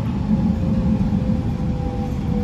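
Running noise inside an SMRT R151 metro train car: a steady low rumble with a faint whine that slowly falls in pitch.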